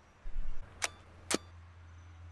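Two sharp mechanical clicks about half a second apart from a Hasselblad 500C/M medium-format camera as it takes a photograph. A brief low rumble comes just before them, and a steady low hum runs underneath.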